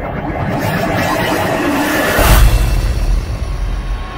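Outro music under a whooshing swell that builds to a deep hit a little past two seconds in: a transition sound effect for an animated logo reveal.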